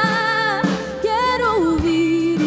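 A woman singing a Portuguese-language worship song into a microphone over instrumental backing, holding long notes that slide lower in the second half.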